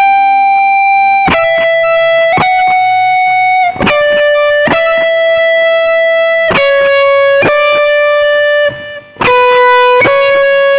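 Gibson Flying V electric guitar playing a slow lead melody in B minor: picked single notes, each held for about a second, stepping mostly downward in pitch, with a short break and a higher note near the end.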